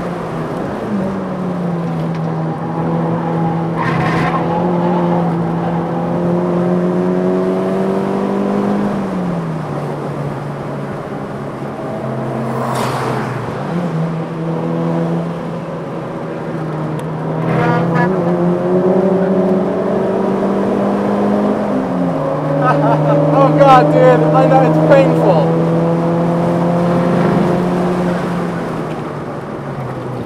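Turbocharged four-cylinder engine of a tuned 2007 VW MK5 GTI, heard from inside the cabin on track, running hard at high revs. Its pitch drops about a third of the way in and again about two-thirds in, and rises in between. Short tyre squeals come several times, with the longest and loudest about three-quarters of the way in.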